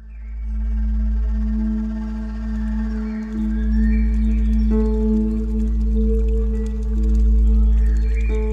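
Ambient intro music fading in: a steady low drone with slow, held melody notes over it.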